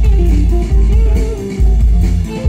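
Live band playing an instrumental passage: electric guitar over deep, sustained bass notes, the bass dipping briefly between phrases.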